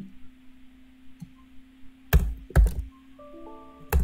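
Two loud computer keystrokes about half a second apart, then a short electronic chime of several steady tones at once, typical of a computer alert sound, and one more sharp click near the end. A steady low hum lies underneath.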